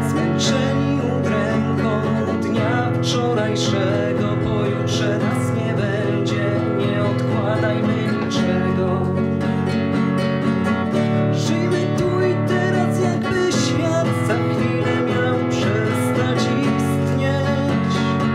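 Acoustic guitar strummed steadily as a song accompaniment, sustained chords with regular strokes.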